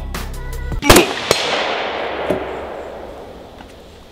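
A single very loud shot from a large-calibre rifle fired off a bench rest, about a second in, followed by a long echoing decay. The heavy recoil kicked hard enough for the shooter to hit himself. Background music plays up to the shot.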